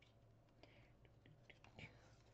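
Near silence: room tone with a low hum and a few faint ticks and soft rustles, which grow a little in the last half second.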